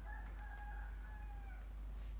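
A faint, drawn-out tone with one overtone above it, lasting about a second and a half and tailing off slightly at the end, over a steady low hum.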